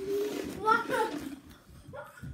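A girl's voice: indistinct talking or vocal sounds for about the first second, then quieter.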